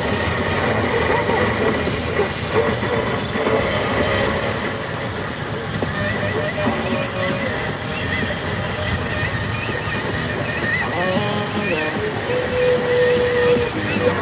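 Steady road and engine noise inside a moving car's cabin, under music with singing playing from the car stereo.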